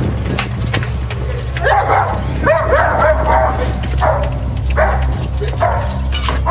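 A dog barking repeatedly: a quick run of barks starting about two seconds in, then a couple more near the end, over a steady low hum.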